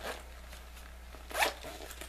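A zipper pulled on a black fabric gadget case as it is closed, one short rasp about a second and a half in.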